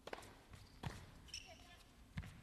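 Faint tennis ball bounces on a hard court, two of them about three-quarters of a second apart, as a player bounces the ball before serving.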